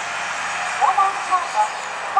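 KTR 700-series diesel railcar running at low speed along the track, a steady engine and rail noise. A person's voice comes in over it about a second in.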